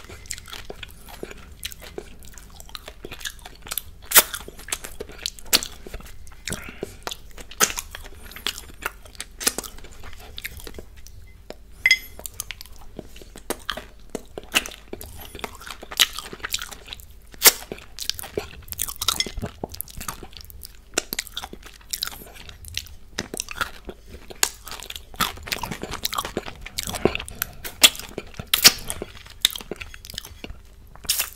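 Close-miked mouth sounds of chewing bits of chocolate cupcake and licking fingers: a dense run of wet smacks and sharp clicks, with no let-up.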